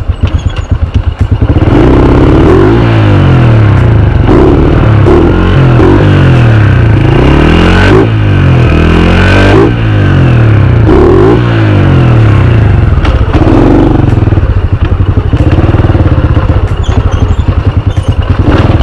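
Honda EX5 underbone motorcycle's single-cylinder four-stroke engine while being ridden: a pulsing idle for the first second or so, then loud running that revs up and eases off again and again.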